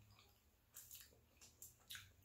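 Near silence, broken by about five faint, short clicks and smacks of eating crab in the second half.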